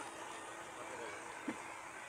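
Faint background voices over a steady outdoor hum, with one short knock about one and a half seconds in.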